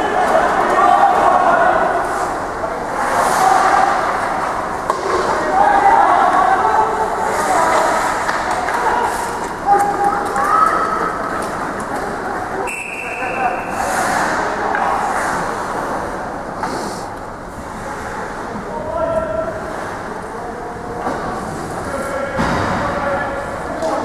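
Indoor ice hockey rink during play: unintelligible voices of players and spectators echoing in the hall, with scattered knocks and scrapes from sticks, puck and skates. A brief high tone sounds about halfway through.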